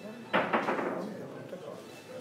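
Boccette billiard balls knocking together on the table: one sharp clack about a third of a second in, followed by a few lighter clicks as the balls bounce apart and settle.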